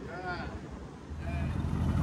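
Faint shouting voices of people cheering, two short calls, over a low rumble that builds up in the second half.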